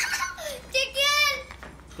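A young child's high-pitched voice: a short call lasting under a second, near the middle.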